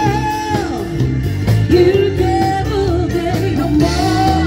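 A live band playing with a lead singer: a sung melody over a stepping bass line, keyboards and a drum kit keeping the beat.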